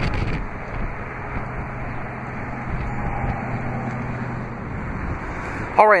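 Wind rumbling on the microphone outdoors, with a low steady hum for a couple of seconds in the middle.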